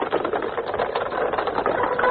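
A dense, rapid mechanical rattle, like a small machine running, holding steady at a moderate level, with tonal music coming in right at the end.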